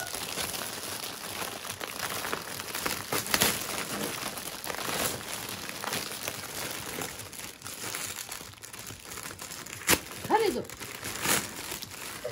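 Shiny metallic foil gift wrapping paper crinkling and rustling as a present is pulled open by hand, with many small sharp crackles.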